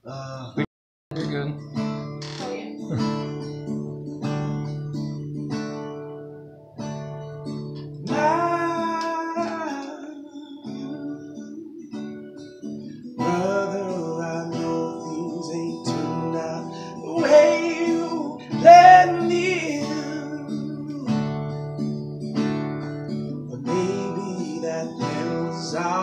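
Acoustic guitar played in a steady repeating picked pattern, with a man singing long phrases over it from about eight seconds in.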